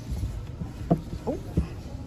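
A few soft, dull knocks and handling noise as a sandal is pulled off a shoe shelf and lifted, over a low rumble. A woman says "Oh" partway through.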